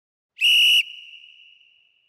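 One short, loud whistle blast at a steady pitch, cut off sharply and followed by a fading ring: a boxing interval timer's warning signal that the one-minute rest is almost over.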